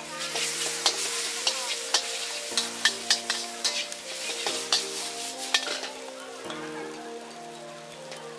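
Rice noodles sizzling in a hot wok as a metal spatula stirs and scrapes them, knocking against the wok in sharp clinks about once or twice a second. The clinks stop and the sizzle eases a little over a second before the end.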